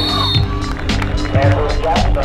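Background music with a steady drum beat over a sustained bass.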